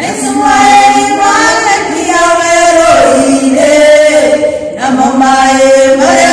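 Three voices singing a church song together, holding long notes, with short breaks between phrases about three seconds in and again near five seconds.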